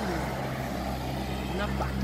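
Steady low engine hum of road traffic, a vehicle passing on the street close by.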